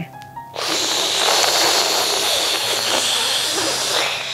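A long, loud hissing in-breath drawn through clenched teeth, sitkari pranayama, the yogic cooling breath; it starts about half a second in and is held steadily for about four seconds.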